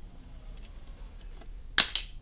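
Pruning shears snipping once near the end, a single short sharp snap, as a cutting is taken from a Christmas cactus (flor de maio) stem.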